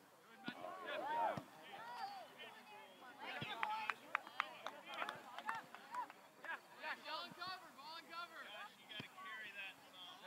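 Voices of players calling and shouting across an open soccer field, too distant for the words to be made out. A handful of sharp knocks come in quick succession between about three and five seconds in.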